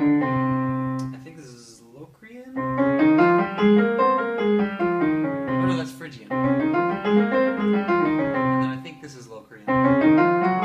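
Digital piano on a concert grand voice playing modal scales on one root, both hands together. A held chord rings for about a second and fades, then come two runs up and back down the keyboard with a short break between them.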